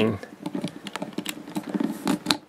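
A run of small, irregular plastic clicks and taps as a toy flag's plastic pole is fitted onto a die-cast Hot Wheels monster truck.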